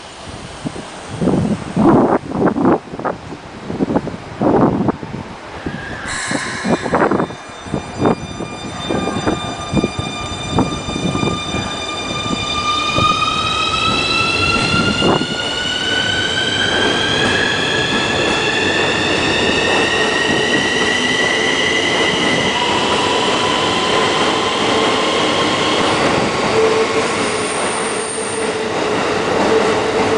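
Keikyu N1000 series train pulling away, its Siemens IGBT inverter and traction motors whining. After a few seconds of knocks, a set of steady tones starts about eight seconds in, then glides slowly upward in pitch as the train accelerates, and drops to a lower tone a little past twenty seconds. Wheel-on-rail noise builds as the cars pass close by.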